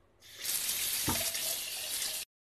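Tap water running steadily from a faucet into a kitchen sink, splashing onto boiled paper pulp in a strainer as the pulp is rinsed. The flow starts about a third of a second in.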